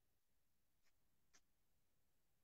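Near silence, with two very faint ticks about a second in.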